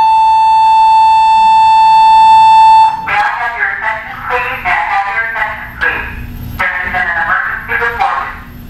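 A loud, steady electronic beep tone that starts abruptly and cuts off suddenly after about three seconds, followed by indistinct talk.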